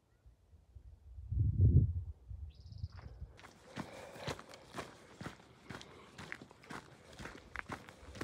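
A hiker's footsteps crunching on a dry dirt and gravel trail in a steady rhythm, starting a little past the middle. Before them come a brief low rumble, the loudest thing here, and a short high chirp.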